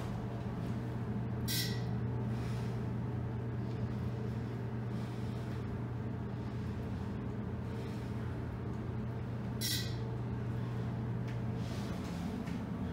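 Fujitec hydraulic elevator car descending with a steady low hum. Two brief high chimes sound, one about a second and a half in and one near the end.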